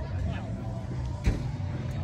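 Indistinct voices of people chatting over a steady low rumble, with a single sharp knock a little over a second in.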